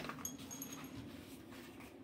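German Shepherd whining faintly: a few thin, very high-pitched squeaks in the first second, over a low steady room hum.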